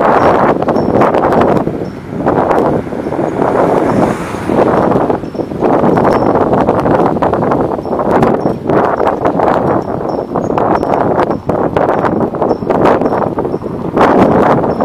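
Wind buffeting the microphone in loud, uneven gusts as the camera moves along, with a scatter of small clicks and rattles underneath.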